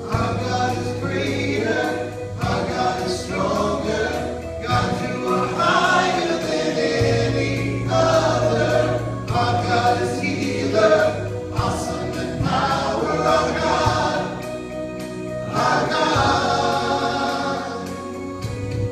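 Live worship band performing: several voices singing together over acoustic guitar and a steady bass line that changes note every few seconds.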